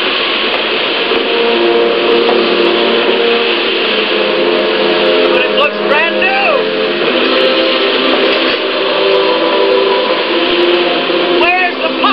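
Loud, steady rush of wind-blown dust from a film's sound track, heard through a screen's speakers, with held steady tones underneath. Short shouts break through about six seconds in and again near the end.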